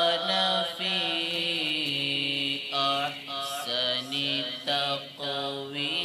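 A man's unaccompanied, melodic Quran recitation in Arabic: long held notes with slow ornamented glides, broken by short breaths about three seconds in, near four seconds and just past five seconds.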